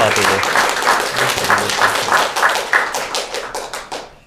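Audience applauding, with a cheer and laughter in the middle; the clapping stops near the end.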